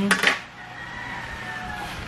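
A metal kitchen knife set down on the table with a brief clatter just after the start, then quiet room noise with a faint steady high hum.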